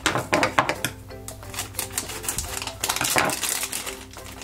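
Plastic foil blind bag crinkling and tearing open in the hands: a rapid, irregular run of crackles, with background music underneath.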